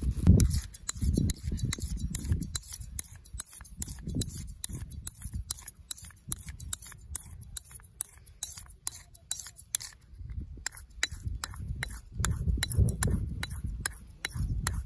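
Straight razor being honed on a sharpening stone set in a wooden block: quick back-and-forth strokes, each a short metallic scrape and click, about three or four a second, with a short pause about ten seconds in. Low, muffled bumps run underneath.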